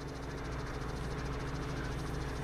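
Steady outdoor background of a live field feed: a constant low hum under insects chirping in a fast, even pulse.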